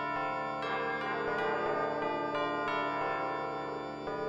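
Bells ringing in quick succession, a new strike about every third of a second, each note ringing on under the next.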